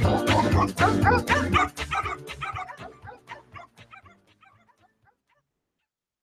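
Music with dogs barking and yipping in it, a segment-break jingle, fading out and ending about five seconds in.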